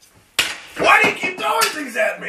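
Brief silence, then a sharp knock about a third of a second in, followed by a man's voice exclaiming with no clear words.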